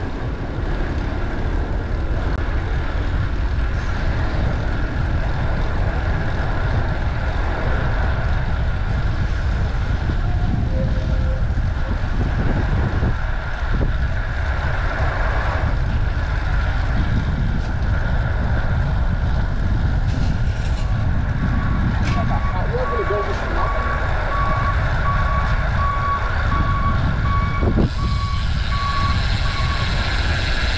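Wind rushing over the microphone and street traffic noise while riding a bicycle in city traffic. About two-thirds of the way in, a vehicle's reversing alarm starts beeping at an even pace and keeps on for most of the rest.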